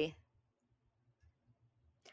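Near silence after the end of a spoken word: a faint low hum of room tone and a few tiny clicks.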